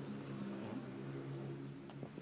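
A steady, even-pitched motor hum, like an engine running at constant speed somewhere near the garden.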